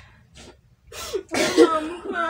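Women's voices in non-speech distress or release: a nearly quiet pause, then a sharp sniff-like burst about a second in, and a loud, breathy, strained vocal outburst from it on.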